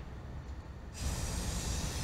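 Aerosol spray paint can spraying: a steady hiss that starts about a second in.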